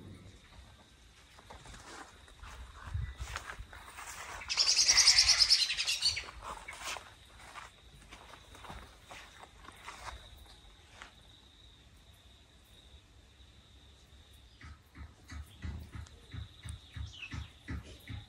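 A bird's loud, rapidly chattering call for a couple of seconds about four seconds in, over quiet garden ambience; near the end a run of soft, regular thuds.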